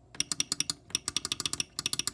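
The small push button inside a Johnson Controls BG10 fire alarm pull station being pressed over and over with a thumb: a fast run of crisp, springy clicks, several a second, with a short pause a little past the middle.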